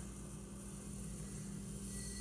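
White hulled sesame seeds pouring from a stainless steel measuring cup into a glass jar: a steady, soft hiss of falling seeds.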